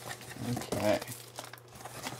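Crinkling and rustling of plastic packing as items are pulled out of a cardboard shipping box, with a short murmured vocal sound about half a second to a second in.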